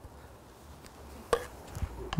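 A single sharp clack of training sword and dagger striking together in a block, about a third of the way from the end.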